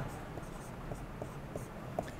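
Marker writing on a whiteboard: faint strokes with a few short squeaks and light ticks as a plus sign, a 5 and an x are written.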